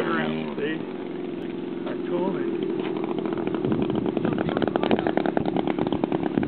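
Engine of a custom Stiletto RC speed plane, swinging a 22/20 propeller. It runs steadily at first, then grows louder from about three seconds in with a fast buzzing rattle as it is throttled up.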